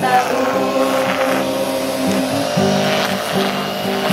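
A mixed youth choir holding one long, slightly wavering note of a gospel song over acoustic guitar chords that change underneath it.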